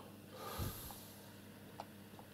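A person's breath, a short snort-like exhale through the nose close to the microphone, with a low thump at its peak, then a single sharp click near the end.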